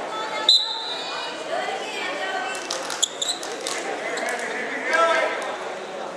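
Voices of coaches and spectators shouting in a gym hall, with sharp high squeaks from wrestling shoes on the mat. The loudest squeak comes about half a second in, and a few more come around three seconds.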